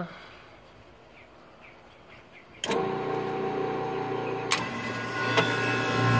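Scotsman ice machine starting back up: a click about two and a half seconds in, then a steady machine hum that keeps running. The restart comes after a shutdown and is part of a fault cycle in which the machine runs briefly, drops about ten pieces of ice and shuts off again.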